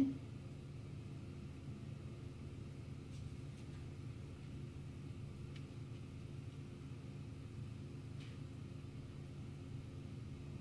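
Quiet room tone: a steady low hum, with three faint soft ticks spread through it.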